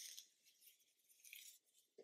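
Near silence with faint rustling of a knitted shawl being handled, in two short soft bursts: one at the start and one about a second and a half in.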